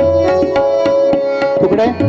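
Tabla solo in teentaal: quick sharp strokes on the tabla with the bayan's deep resonant bass, over a harmonium playing a repeating accompaniment melody with one note held steady. A brief rising glide sounds near the end.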